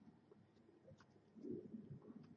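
Near silence: room tone, with one faint click about halfway through and a faint low murmur near the end.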